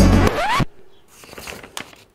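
Background music that cuts off suddenly just over half a second in, followed by faint rustling and light scratchy ticks of paper instruction sheets being handled.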